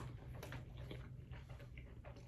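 Faint chewing with small scattered mouth clicks, a person eating a sandwich.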